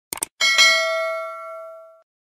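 Two quick clicks, then a single bright bell chime that rings and fades away: the sound effect of a subscribe button being clicked and a notification bell being rung.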